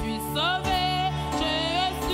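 A woman singing a hymn into a microphone, holding long notes with vibrato, over sustained instrumental accompaniment.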